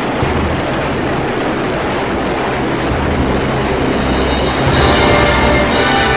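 Background music with a dense, steady rushing noise beneath it that grows brighter near the end.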